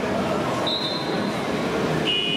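Steady din of a busy indoor horse arena, with a short high tone a little over half a second in.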